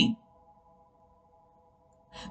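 A woman's voice trails off at the very start, then only a faint, steady drone of several held tones remains.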